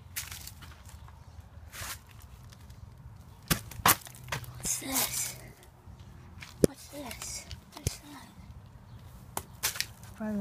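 Footsteps scuffing and crunching over dry leaves and dirt, with a few sharp snaps and knocks along the way and a burst of rustling about halfway through.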